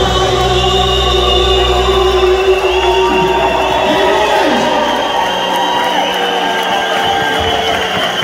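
A male singer performing live through the hall's PA over amplified backing music, with the crowd joining in; the deep bass drops out about three seconds in.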